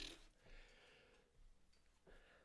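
Near silence: faint room tone, as the tail of a rap track dies away in the first instant.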